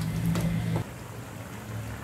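Steel ladle stirring thick simmering masala gravy in an aluminium pot, with a few light knocks of the ladle against the pot. A steady low hum runs under it and stops about a second in.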